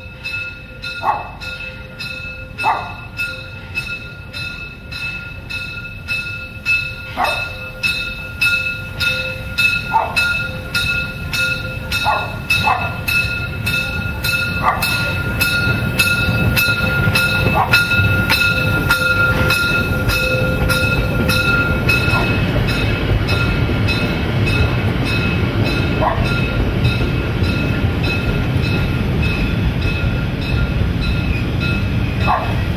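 Narrow-gauge steam locomotive (class 99.32, no. 99 2321) running slowly through a street with its warning bell ringing steadily, about two strokes a second. From about halfway the locomotive passes close, and the low rumble of its running gear and the rolling carriages gets much louder.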